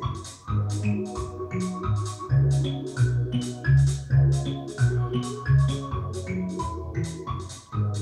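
Music playing back from a cassette on a Technics RS-BX501 stereo cassette deck: a track with a steady beat of about four ticks a second over a moving bass line.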